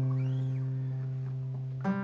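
A single low note plucked on an acoustic guitar, ringing and slowly fading away. It is the root note C, played as the first degree of an interval demonstration.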